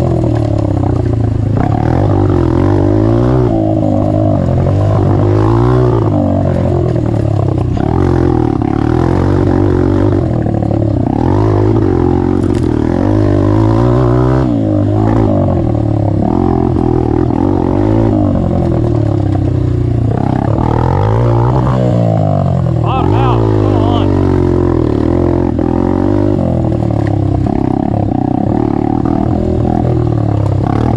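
Honda CRF150F's single-cylinder four-stroke engine, its stock exhaust baffle removed, revving up and falling back over and over, every second or two, as the rider works the throttle and gears.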